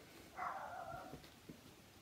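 A dog calling faintly: one drawn-out bark about half a second in, lasting roughly half a second.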